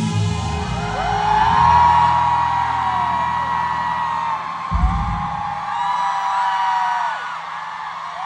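A live band with acoustic guitar and drums plays out the end of a song, finishing on a final hit about five seconds in. High-pitched screams from the crowd rise over the music from about a second in and carry on after it ends.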